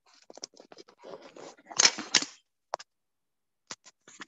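Handling noise from a phone held near its own microphone as it is turned around to its back camera: scratchy rubbing and a quick run of clicks for about two and a half seconds, loudest near the middle, then a couple of single clicks.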